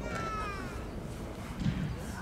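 A high-pitched, meow-like squeal from a person's voice, one call falling in pitch over under a second near the start, with a short low voice sound near the end over steady outdoor background noise.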